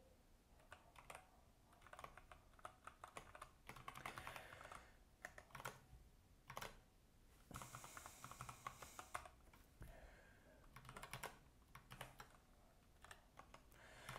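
Faint typing on a computer keyboard: irregular runs of key clicks as a line of code is entered.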